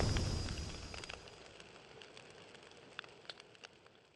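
The fading tail of a deep explosion sound effect, its rumble dying away over the first second and a half, then near silence broken by a few faint crackling clicks.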